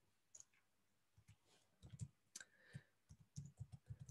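Faint computer keyboard keystrokes: a scattering of separate key clicks, mostly in the second half.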